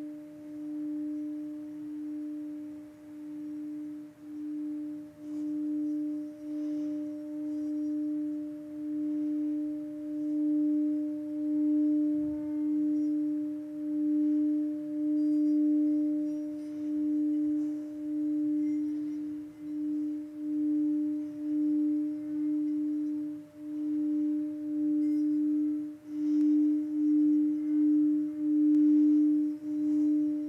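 Singing bowl holding one steady low tone with a fainter higher overtone, sustained without fading, its loudness pulsing in swells about once a second.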